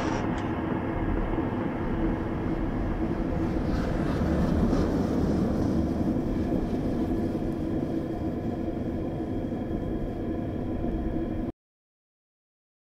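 Wind rumbling on the microphone with a faint steady hum under it, cutting off abruptly near the end.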